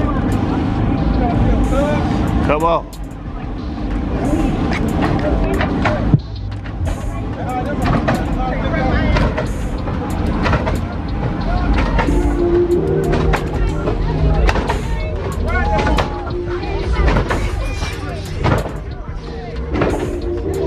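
Unclear background voices mixed with music, over a low car engine rumble and scattered clicks.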